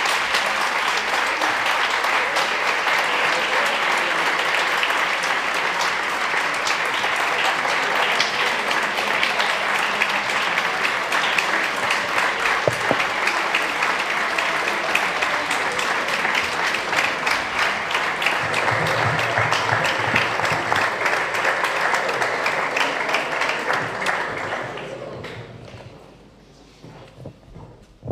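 A large audience applauding, sustained for over twenty seconds, then dying away near the end.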